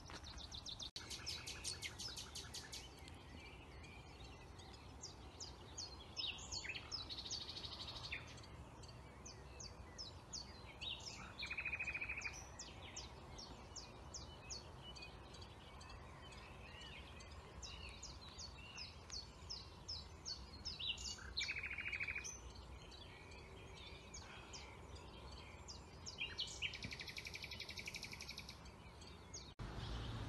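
Several songbirds singing in woodland: many short high chirps and rapid trills, with a buzzier, lower trill that comes back three times, about 11, 21 and 27 seconds in.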